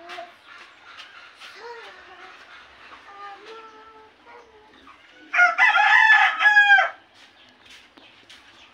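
A rooster crowing once, about five seconds in, for about a second and a half, its pitch dropping at the end. Before it, faint short clucking calls.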